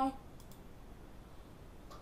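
A couple of faint computer mouse clicks over quiet room tone.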